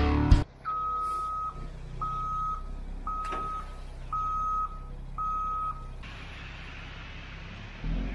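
Intro music cuts off just after the start. A vehicle's reversing alarm then beeps five times, about once a second, over a low, steady engine rumble.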